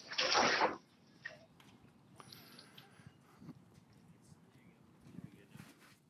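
A garden-hose blaster wand nozzle spraying a strong jet of water onto a car, a hissing rush that cuts off under a second in. After that there is only faint background.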